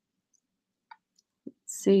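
Near silence with two faint, brief clicks, one about a second in and one about halfway through the second second, then a woman's voice starting near the end.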